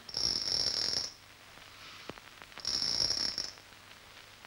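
Night insects trilling in two high, buzzy bursts of about a second each, the second coming about two and a half seconds after the first, with faint clicks in the lull between them.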